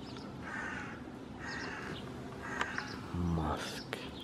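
A bird calling three times, about a second apart, with a brief low murmur just after three seconds in.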